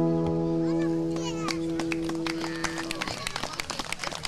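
A band's final guitar chord ringing out and fading away over about three seconds, while the audience starts clapping, the claps growing more frequent as the chord dies.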